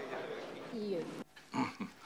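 Indistinct voices over a noisy background murmur, including one falling vocal sound, cut off abruptly a little over a second in. A man's voice then begins speaking near the end.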